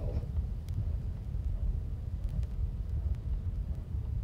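Low steady rumble with a few faint clicks: background noise of a recording played from a worn vinyl record, with no voice on it.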